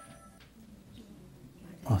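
A short quiet pause: a few steady ringing tones fade out within the first half second, then a man's hesitant "uh" near the end.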